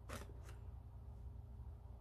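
Two short scratchy sounds near the start, about a third of a second apart, the first the louder, over a faint low steady hum.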